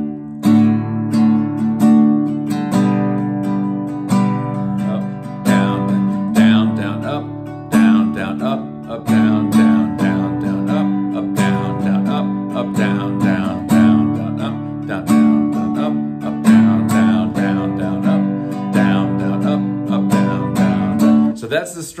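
Nylon-string classical guitar strumming chords in a steady, busier strum pattern, with accented strokes between lighter ones.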